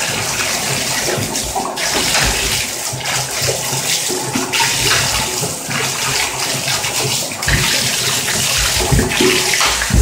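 Bathtub faucet running steadily into a tub, the stream splashing as a dog paws at it, with a few low thumps near the end.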